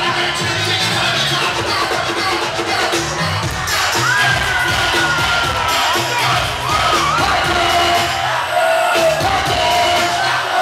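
Loud club music over the PA with a steady bass beat, and a packed crowd cheering and shouting along. A held high note slides up and then slowly down from about four to seven seconds in.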